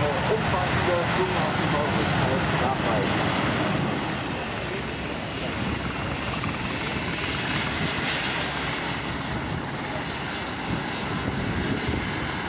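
Airbus A380-841's four Rolls-Royce Trent 970 turbofans running as the airliner rolls along the runway: a steady jet engine noise that eases slightly about four seconds in.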